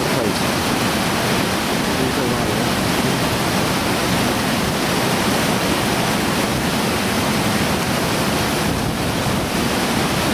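Loud, steady roar of the Pistyll Rhaeadr waterfall: an even rushing of falling water with no let-up.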